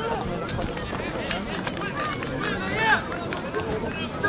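Football match spectators' voices, talking and calling out over a dense outdoor background, with scattered short knocks.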